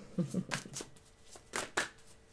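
Tarot cards being shuffled by hand: a few sharp, snappy flicks of card stock in two quick pairs, about a second apart. A brief trace of voice from the tail of a laugh comes just before them.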